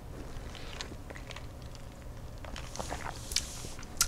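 A cocktail over ice being drunk from a tall glass: faint swallowing and a few small clicks, over a low steady hum.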